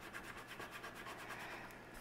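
Faint, rapid scratching strokes as a spot on a scratch-off savings card is scratched away to reveal the dollar amount beneath.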